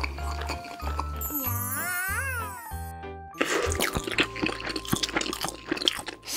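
Light children's cartoon music with a pulsing bass line. Partway through, a short voice-like sound glides up and down in pitch. From about halfway, dense, rapid crunchy chewing and biting sound effects take over as the cartoon character munches a crumbly pastry.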